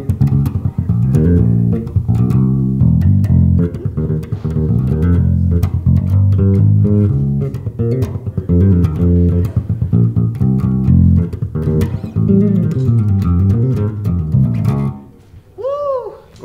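MTD 535 five-string active electric bass played through an old Ampeg tube amp: a busy, quickly moving bass line of many short notes. It stops about a second before the end.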